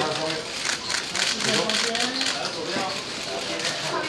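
Indistinct chatter from a crowd of press photographers, with many quick camera-shutter clicks scattered through it.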